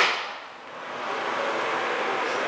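A sharp click, then a bathroom ceiling exhaust fan starting up and building to a steady whir over about a second.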